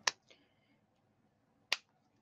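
Two sharp plastic clicks about a second and a half apart, from Stampin' Blends alcohol markers being capped and handled as one colour is swapped for the next.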